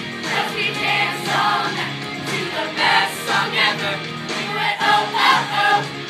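Children's show choir singing together over a pop music accompaniment.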